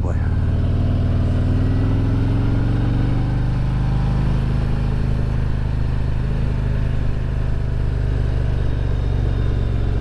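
Harley-Davidson Road Glide's V-twin engine running at low speed, its note rising a little over the first few seconds and then holding steady as the bike rolls along.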